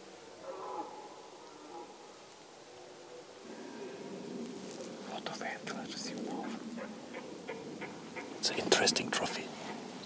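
Hushed human whispering with soft rustling, the loudest stretch of whispered hiss coming near the end.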